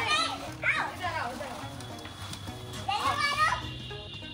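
A young girl's high-pitched voice calling out three short times, over soft background music.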